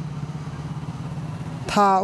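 A steady low drone with a fast flutter, which gives way to speech near the end.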